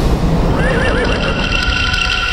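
A horse whinnying: a quavering, wavering call that starts about half a second in and then holds on a high note, over a deep rumble.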